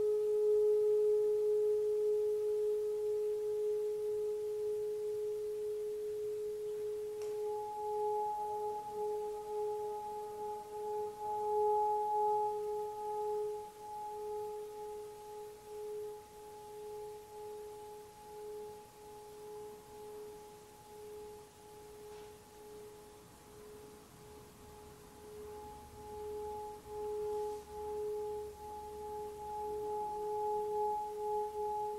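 A single long, near-pure musical tone held steadily, with a slow wavering pulse in it. A faint higher overtone strengthens about eight seconds in. The tone fades through the middle and swells again near the end.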